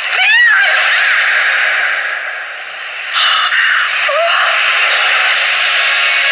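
Film trailer sound design: a woman's short cry at the start, then a loud rushing noise that dips a couple of seconds in and swells again.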